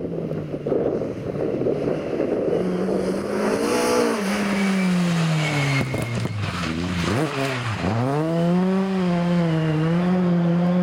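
Ford Escort Mk2 rally car engine at stage pace. The revs fall away as the car slows for a corner, with a few sharp cracks about six seconds in. They dip sharply twice on gear changes, then rise again as it accelerates away and hold high.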